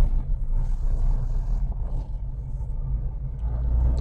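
Inside a moving car: a steady low rumble of engine and road noise.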